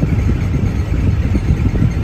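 Engine and road rumble heard from inside a moving Tata Magic shared van, a steady low, noisy drone.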